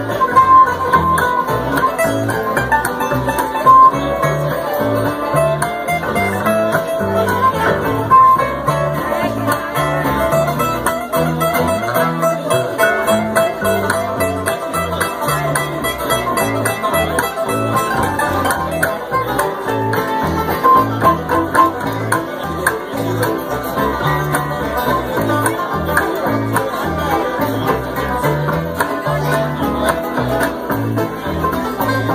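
A live acoustic bluegrass band plays an instrumental tune without singing: banjo, mandolin, acoustic guitar and upright bass pick together over a steady bass pulse.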